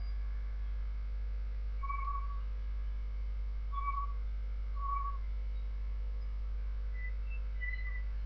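Background soundtrack of sparse, soft whistle-like notes, each about half a second long and a second or more apart, over a steady low hum.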